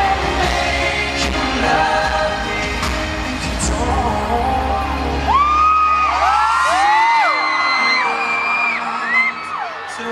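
Live pop ballad with band backing that drops away about five seconds in, leaving many overlapping high-pitched screams from the audience.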